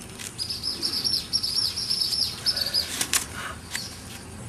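A small bird singing a rapid, high run of chirps for about two seconds. Near the end come a few sharp crackles of a stiff leaf being split apart by hand.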